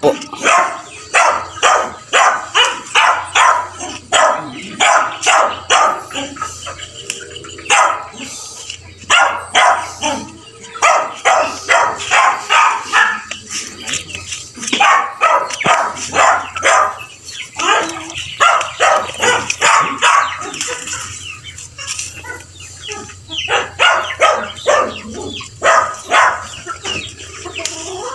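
Farmyard animals calling: a dog barking and chickens clucking, in quick runs of short calls, several a second, broken by brief pauses.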